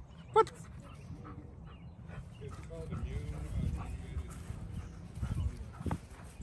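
German Shepherd giving one sharp, loud bark about half a second in, then whining at times.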